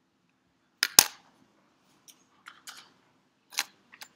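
Sharp clicks from computer mouse and keyboard use: a loud double click about a second in, then three softer clicks, over a faint low hum.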